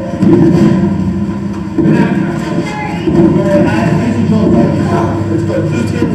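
Soundtrack of a video played over a hall's loudspeakers: music and unintelligible voices, with a couple of sudden thuds, about a quarter-second and two seconds in.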